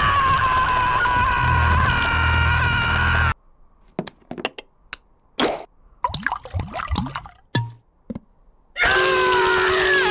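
A cartoon dog screaming in a long, wavering cry, then a quiet stretch of small scattered plops and clicks, and a second loud scream starting near the end.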